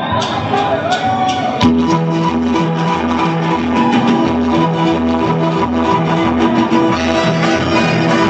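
A ska-fusion band playing live as a song starts. After a short lead-in, the full band comes in on a sharp hit about a second and a half in, with a steady, rhythmic electric bass line under guitar and keyboard.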